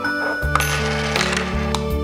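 Soft background music with steady held notes, over a few light clicks and rattles from a small plastic electronic unit being handled, its cable being plugged in.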